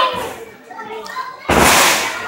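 A wrestler's body slamming down onto the wrestling ring's canvas: one sudden loud crash about one and a half seconds in, after some crowd voices, including children's.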